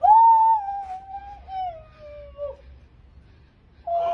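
A woman's long, high-pitched scream of emotion at a surprise reunion. It holds, then slowly falls in pitch and breaks off after about two and a half seconds, and another cry starts right at the end.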